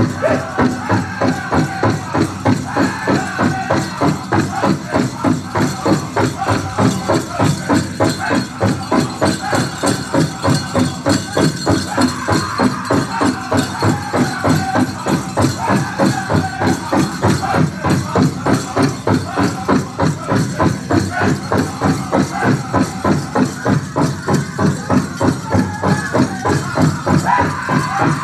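Live powwow drum and singers performing a grass dance contest song: a large drum struck by several drummers in a steady, quick beat, with high-pitched group singing carried over it.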